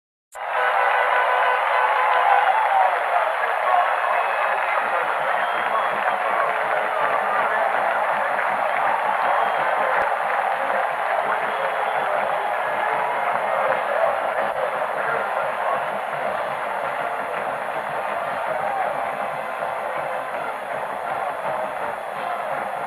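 Large stadium crowd cheering and shouting in a steady roar that starts abruptly about half a second in and eases slightly, heard thin and tinny through an old television broadcast recording.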